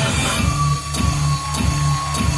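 Hip-hop backing beat playing: a steady bass line with regular drum hits, and a long held high note coming in about half a second in.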